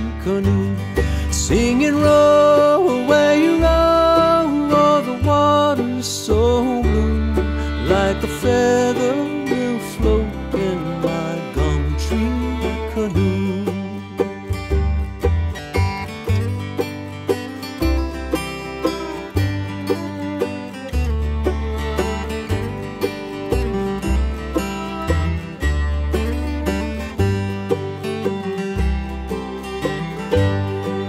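Instrumental break in an old-time, bluegrass-style folk song: acoustic guitar and banjo picking over a steady bass line. A lead melody slides between notes during the first ten seconds or so.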